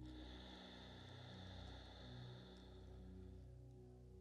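Faint, soft background music with steady low tones. Over it is a long exhaled breath that starts at once and fades out about three and a half seconds in.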